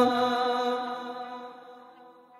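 The song's final held note dying away, a steady pitched tone with its overtones fading evenly toward silence over the two seconds.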